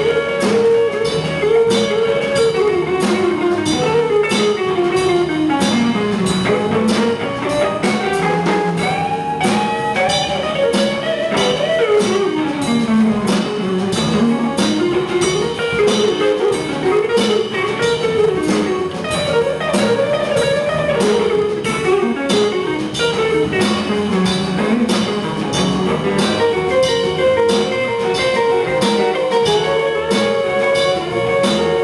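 A small jazz combo playing live: electric guitar, electric bass and drum kit, with a melodic line winding up and down over a steady beat on the drums.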